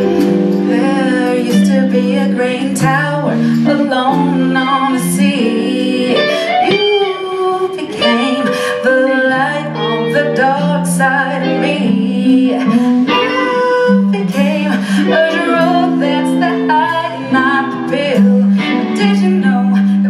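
Live band playing a slow pop song: a woman singing over electric guitar, bass guitar, keyboard and drum kit.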